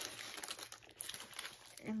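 Irregular crinkling and rustling as paper notebooks and notepads are handled and shuffled; a woman's voice starts just at the end.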